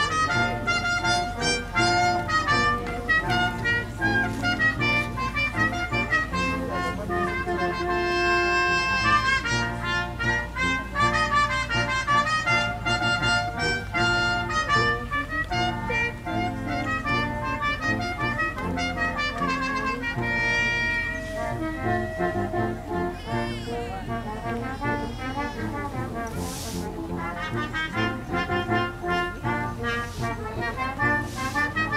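An orchestra playing a melody, with brass instruments to the fore.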